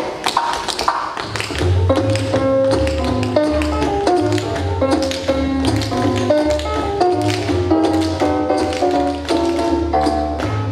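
A group of dancers' tap shoes striking a hard stage floor, at first on their own; about a second and a half in, music with a bass line comes in, and the taps carry on over it.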